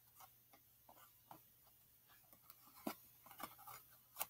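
Faint, scattered soft taps and rustles of tarot cards being handled, the loudest a little before three seconds in, in an otherwise near-silent small room.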